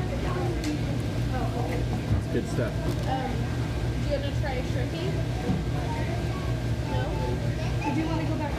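Restaurant dining-room background: indistinct voices talking and background music over a steady low hum.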